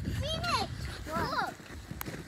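Children's voices: two short wordless vocal sounds, the second a quick call that rises and falls, over low rumbling noise.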